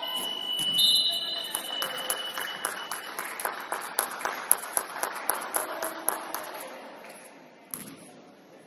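Indoor basketball game in a gym: a thin high steady tone held for about three seconds, then a quick, irregular run of sharp smacks, about three or four a second, that fades toward the end.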